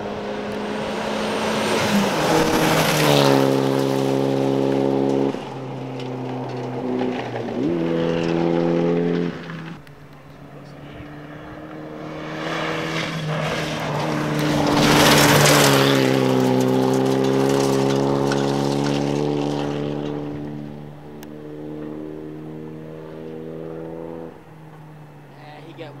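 Rally cars driven flat out on gravel, engines held high in the revs with sudden pitch jumps at gear changes, and a hiss of gravel and tyres as they pass. The loudest passes come a few seconds in and about halfway through.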